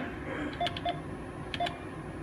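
ATM touchscreen keypad beeping as an amount is keyed in: a few short, evenly pitched beeps, each with a faint click, one per key press.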